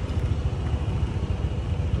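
Steady low rumble of outdoor background noise, heaviest in the bass.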